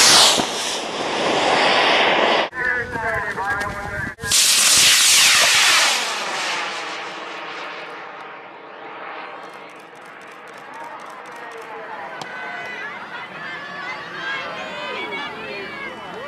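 Model rocket motors firing at liftoff: a loud hissing roar for about two and a half seconds, broken by a short burst of voices, then the roar again from farther off, fading and dropping in pitch over several seconds as the rocket flies away. Voices exclaim in the last few seconds.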